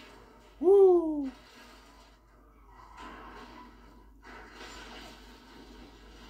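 A short, loud wordless vocal exclamation with a rising-then-falling pitch, about half a second in. After it, faint film soundtrack from the TV's speakers.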